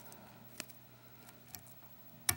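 Near silence: quiet room tone with two faint clicks, about half a second in and near the end, as scissors and tools are handled at a fly-tying vise.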